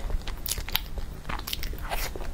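Biting into and chewing a crisp brown shell-like treat close to a lapel microphone, with several sharp, irregular crunches: one about half a second in, another just after, and more near the middle and the end.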